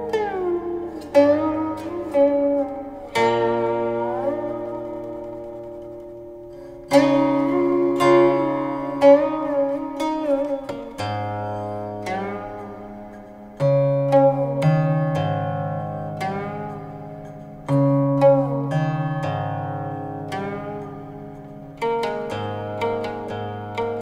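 Solo guqin, the seven-string Chinese zither, being plucked: notes ring and fade slowly, several of them sliding in pitch as the stopping hand glides along the string. A long fading note fills the first part, then firmer plucks come back about seven seconds in.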